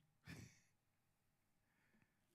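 A man's short breathy exhale close to the microphone, then near silence.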